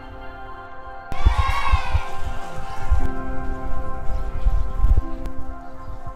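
Background music with long held notes, over an uneven low rumble with bumps from electric unicycles rolling on cobblestones. A short wavering higher tone comes about a second in.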